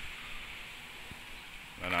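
Quiet outdoor background: a soft steady hiss with no distinct events, then a man's voice says a single word near the end.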